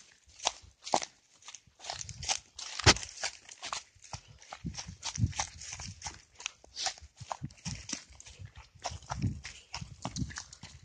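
Footsteps hurrying through dry, dead grass: irregular crunching and rustling strides, with one sharper knock about three seconds in.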